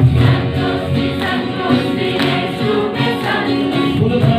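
Live church worship music: several voices singing together over a band of acoustic guitar, electric guitar and keyboard.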